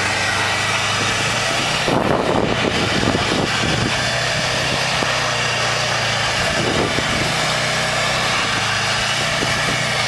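2004 Subaru WRX STI's turbocharged flat-four engine running at steady revs as the car slides through donuts in snow, under a steady rush of noise that swells in rough patches a couple of seconds in.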